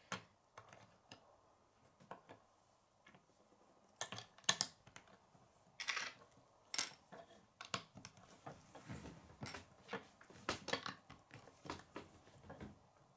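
Plastic Lego bricks clicking and clattering as pieces are handled and snapped onto a small brick chassis on a wooden tabletop: scattered short clicks and knocks, with the loudest clusters about four, six and ten seconds in.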